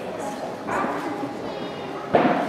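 Indistinct voices in a large hall, with one short loud pitched call about two-thirds of a second in.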